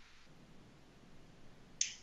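Near silence of room tone, broken near the end by one short, sharp click.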